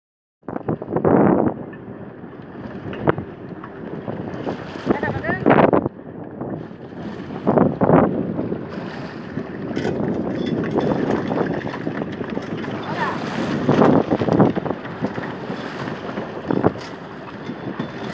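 Wind buffeting the microphone over a steady rush of sea and boat noise, with louder gusts or bursts every few seconds.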